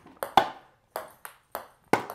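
Ping-pong ball rallied with homemade paddles, bouncing on a hardwood floor: about six sharp, separate clicks of ball on paddle and floor.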